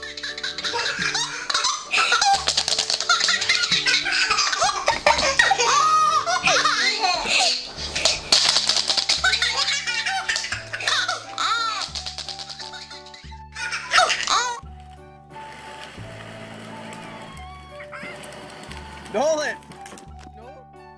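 A baby laughing hard in repeated fits over background music. The laughter dies down after about fifteen seconds, with one more short burst near the end.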